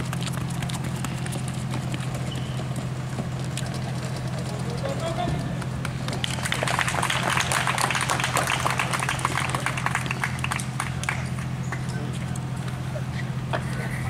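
Spectators shouting and cheering over the clatter of running feet and a wooden ladder being stood up and climbed, loudest from about six to ten seconds in. A steady low hum runs underneath.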